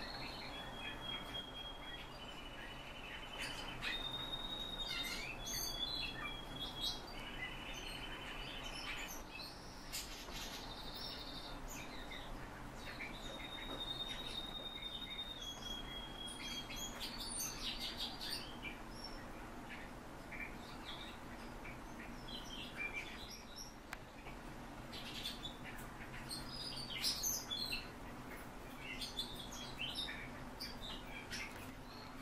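Birds calling: a series of long, steady high whistled notes, each held about a second and at a different pitch, through the first half, then scattered short chirps, busiest near the end.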